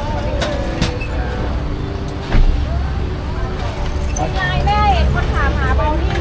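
Open-air street-market ambience: a steady low rumble of road traffic under background voices, with a voice heard briefly near the end.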